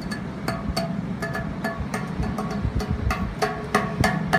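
Hands drumming on a balcony railing: a quick, uneven run of sharp taps, several a second, over a steady low rumble.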